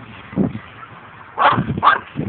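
A dog barking: one lower bark about half a second in, then two sharper barks close together near the end.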